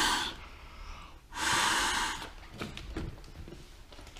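A man's two rescue breaths into a CPR training manikin: a loud rush of breath ending just after the start, then a second one lasting about a second from just over a second in.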